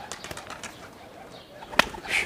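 Faint pigeon sounds, with a single sharp click near the end.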